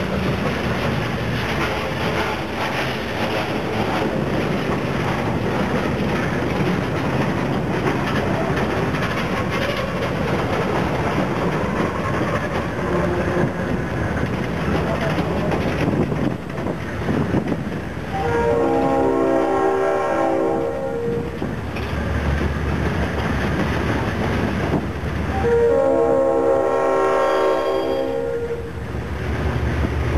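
Freight box cars rolling past with steady wheel-on-rail noise, then a diesel locomotive's multi-chime air horn sounds two long blasts, one about 18 seconds in and one about 25 seconds in, each a few seconds long. A low engine rumble from the GE C39-8 diesel locomotive grows in the second half as it draws near.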